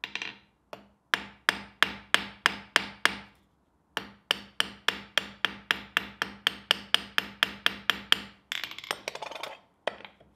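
Small ball-peen hammer striking the end of a metal hinge pin on an anvil, peening it over to rivet the hinge of a wafer iron: a run of ringing metal taps about three a second, a short pause about three seconds in, then a longer run. A brief metallic scraping follows near the end.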